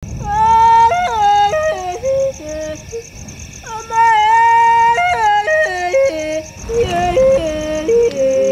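Bayaka yodeled singing: a high voice flipping sharply between a lower and an upper register and gliding down, one phrase sung twice, with a new phrase beginning near the end. A steady, fast-pulsing insect chirr runs high above it.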